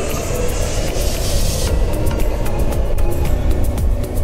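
Background music with a heavy bass and a steady beat.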